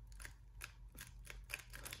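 3x3 speed cube being turned quickly by hand through the 'sexy sledge' algorithm: a fast run of about a dozen faint plastic clicks as the layers snap round.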